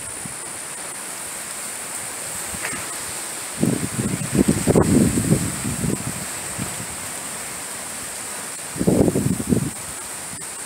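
Storm wind blowing steadily through palm fronds and trees with rain. Two louder low rumbling gusts come through, one about three and a half seconds in lasting a couple of seconds and a shorter one near the end.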